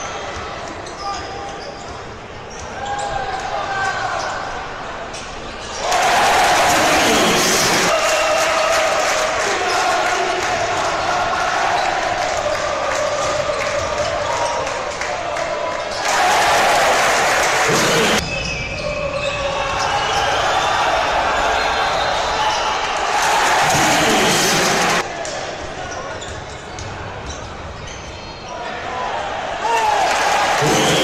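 Live arena sound of a basketball game: the ball bouncing on the hardwood court amid voices and general hall noise, in a series of edited clips that cut in and out abruptly, about six times.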